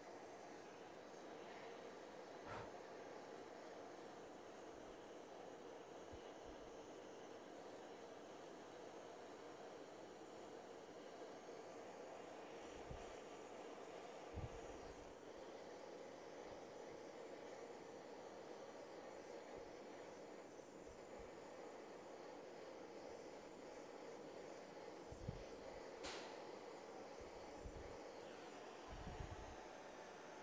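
Chef's butane blowtorch burning with a faint, steady hiss as it caramelizes the sugar topping on crème brûlée, with a few light knocks now and then.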